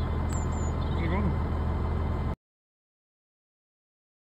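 Massey Ferguson tractor engine idling with a steady low hum, with a few small bird chirps and a brief voice about a second in. The sound cuts off abruptly a little over two seconds in, leaving silence.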